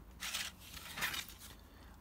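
Faint scraping of a thin plastic cobblestone sheet handled and slid across a cutting mat, two short rasps about a quarter second and a second in.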